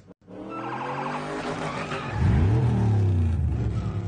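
Film sound effects of a police car: engine revving and tyres skidding, over a film score, with a deep engine sound swelling loud about two seconds in.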